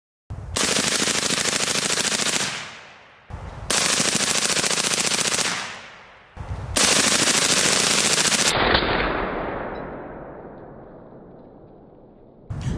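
Suppressed M16 rifle firing full-auto .223 steel-cased ammunition in three continuous bursts of about two seconds each, each dying away in echo; the last echo fades over a few seconds.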